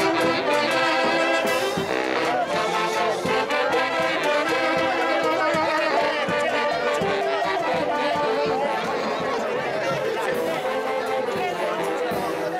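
Festival band music led by saxophones, with drum and cymbal, played steadily under loud crowd chatter.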